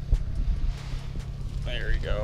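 Wind buffeting the microphone, an uneven low rumble, with a short vocal exclamation near the end.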